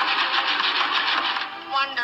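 Cartoon sound effect of a house-building machine at work: a rapid, even mechanical clatter, with a short rising whistle near the end.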